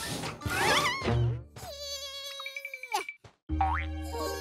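Cartoon soundtrack of comic sound effects and music: warbling, wobbling pitched sounds, then a single held tone that drops away about three seconds in, and after a short break music with a steady bass starts again near the end.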